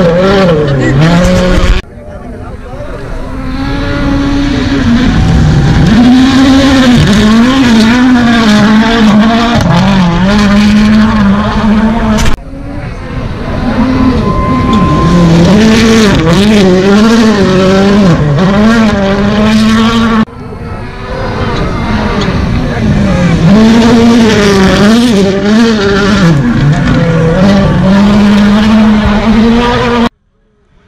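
World Rally Championship cars' turbocharged four-cylinder engines at high revs, pitch rising and dropping repeatedly with gear changes and throttle lifts as the cars race past one after another. The sound cuts off abruptly three times, about 2, 12 and 20 seconds in, and each time builds up again as the next car approaches.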